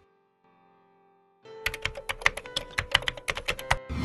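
Typing sound effect: a quick run of keyboard-like clicks, about eight a second, over a faint held musical tone, starting about a second and a half in after near silence.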